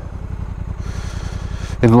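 Honda NT1100's parallel-twin engine idling steadily, a low even rumble.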